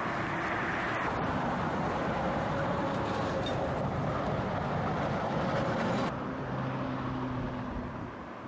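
Steady motorway traffic noise, the tyres and engines of passing cars and lorries. About six seconds in it drops suddenly to a quieter background with a low steady hum.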